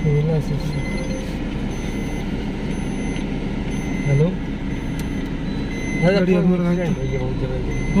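Car engine and road noise heard from inside the cabin as a steady low rumble.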